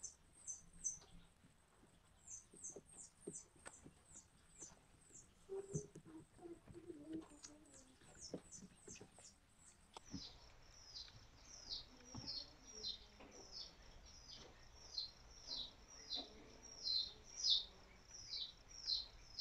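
A small bird chirping over and over, faint, in quick short downward chirps a few times a second.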